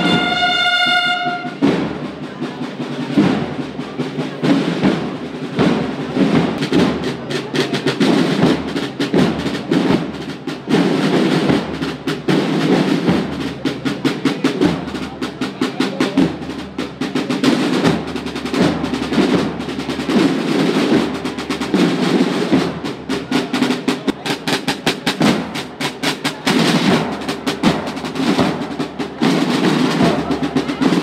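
Marching band drums, snares and bass drums, playing a fast rolling processional march rhythm. A held brass chord cuts off about a second and a half in, leaving the drums alone.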